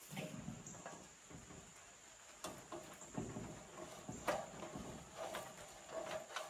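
Faint scattered knocks and creaks of a person climbing from wooden roof beams onto an aluminium extension ladder, over a thin steady high-pitched insect trill.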